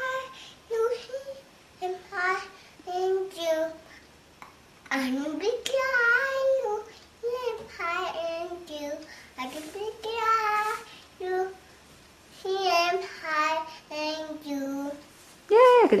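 A toddler singing a children's song unaccompanied in short, high-pitched phrases with brief pauses between them. Just before the end, a louder adult voice starts speaking.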